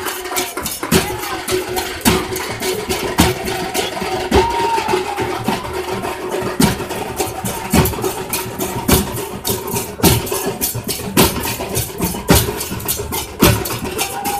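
Procession drumming on large barrel drums and smaller stick-beaten drums: dense, fast strokes with heavy beats a few times a second, over a steady ringing tone.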